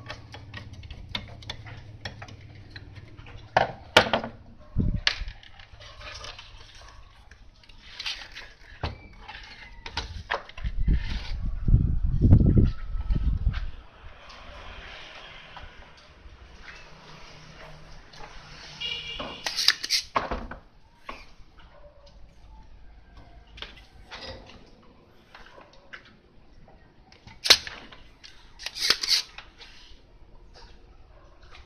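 Handling noise from a CRT television's main circuit board being worked loose and turned over on a bench: scattered clicks, knocks and scrapes of plastic and metal, with a louder, low rumbling stretch of a few seconds near the middle.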